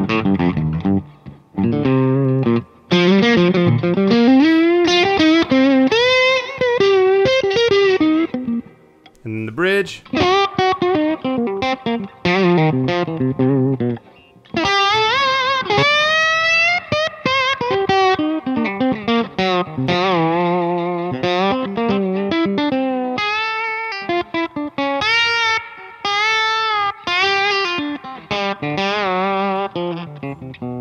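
Electric guitar played with a brass slide through a lightly driven Hudson Broadcast AP overdrive, in gliding, singing phrases with sustained notes and a few short pauses.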